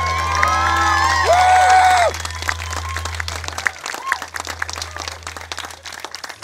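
A string band of violin, acoustic guitar and double bass finishes a tune on a loud held note about two seconds in, a low bass note ringing on for a moment after; then an audience claps.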